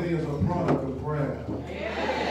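People's voices, wavering and drawn out, calling out over a steady low hum.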